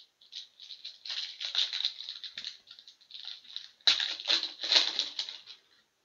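Foil wrapper of a 2017-18 Synergy hockey card pack crinkling and tearing as it is opened by hand, in a run of short rustles that are loudest about four to five seconds in.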